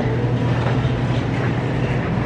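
Steady low machine hum under an even wash of background noise, the running refrigeration and ventilation of a grocery store's refrigerated seafood display cases.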